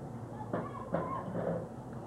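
Indistinct voices of spectators talking in the stands, with no words clear.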